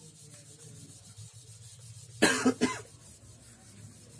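A whiteboard duster wiping marker writing off the board, in two loud short strokes a little over two seconds in.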